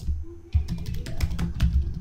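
Typing on a computer keyboard: a quick run of keystrokes, starting about half a second in, as a word is typed.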